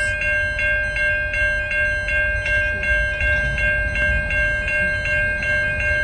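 Railway level crossing warning bells ringing steadily, about three strikes a second, over a low rumble.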